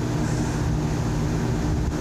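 Steady low mechanical hum with a constant drone, heard from inside a stopped car's cabin.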